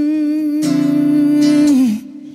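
A man's wordless vocal holding one long note with a slight waver over acoustic guitar chords. A new chord is strummed about two-thirds of a second in, and the voice slides down just before the end.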